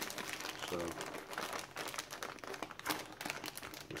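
Plastic MRE heater bag with the food pouch inside crinkling and crackling as it is handled and folded shut.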